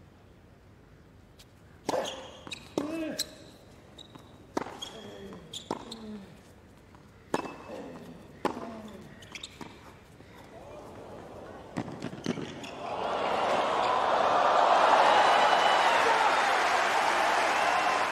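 Tennis rally on a hard court: a series of sharp racquet strikes and ball bounces about a second apart. About thirteen seconds in the arena crowd breaks into loud cheering and applause as the point is won, and it carries on to the end.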